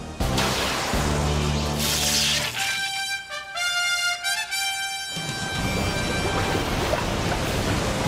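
The Green Ranger's Dragon Dagger flute plays its short stepped-note tune, about three seconds in and lasting about two seconds: the call that summons the Dragonzord. Before it there is action music with a low bass, and after it a dense rushing noise like churning water.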